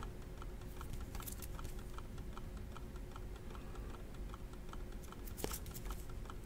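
Faint, rapid light clicking, about four or five clicks a second, over a low steady hum, with one sharper click near the end.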